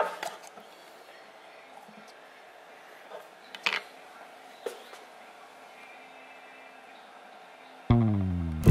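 Low room sound with a few light clicks and knocks of hands handling a can and hanging rods on a shelf. Guitar music starts suddenly and loudly just before the end.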